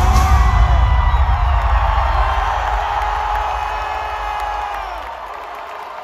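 Loud live rock/hip-hop concert music with heavy bass and drums, thinning and falling in level until the low end drops out near the end, as the crowd cheers and whoops.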